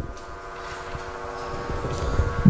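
A pause in a man's speech, filled by a steady hum made of several held tones.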